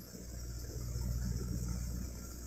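A faint, steady low rumble that swells slightly in the middle and eases toward the end.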